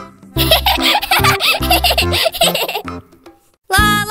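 High-pitched cartoon giggling and laughter over bouncy background music with a steady beat. Near the end the sound drops out briefly, then a new tune starts.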